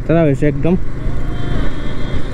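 Bajaj Pulsar NS200's single-cylinder engine running at a steady cruising speed, mixed with a steady rumble of wind on the microphone. A man's voice talks over it in the first part.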